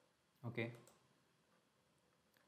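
A brief wordless vocal sound from a man's voice, a hum or 'uh', about half a second in, then quiet room tone.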